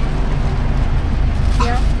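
Car engine idling with a steady low hum, heard from inside the cabin with a door open. A brief voice cuts in near the end.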